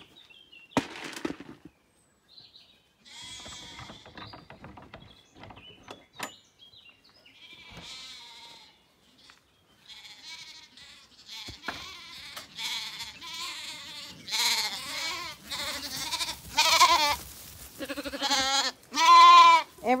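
Zwartbles lambs bleating with quavering calls, a few at first, then more often and louder toward the end as they come close.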